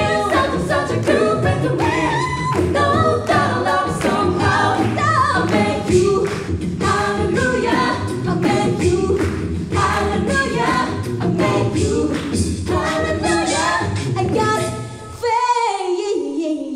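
A cappella group singing an up-tempo soul-pop number. A female lead voice rides over close backing harmonies, a sung bass line and steady mouth-made percussion. About a second before the end, the bass and percussion drop out, leaving the voices on a held note that slides down.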